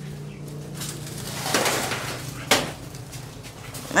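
Handling noise as potted trees are moved: rustling and scraping, with one sharp knock about two and a half seconds in.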